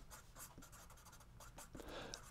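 Faint scratching of a felt-tip marker writing on paper in a few short strokes.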